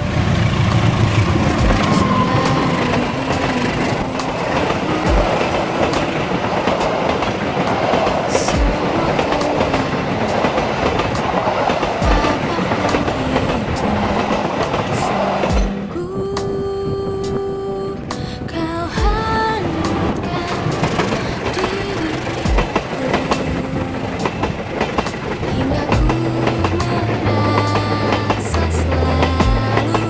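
Diesel-hauled passenger train passing close by at speed, its wheels knocking over rail joints every second or two, with pop music playing over it.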